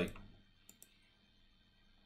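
Near-silent room tone after the end of a spoken word, broken by two faint short clicks a little under a second in.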